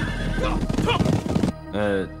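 A group of horses galloping, a dense run of hoofbeats with a horse neighing. It cuts off sharply about a second and a half in.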